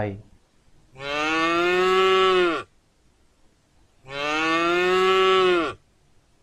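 A cow mooing twice: two long moos of under two seconds each, about a second apart, the pitch dropping at the end of each.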